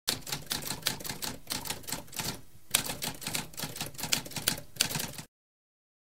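Typewriter keys typing rapidly, a dense run of clicks with a short pause about halfway through, resuming with a louder strike. The typing stops abruptly a little over five seconds in.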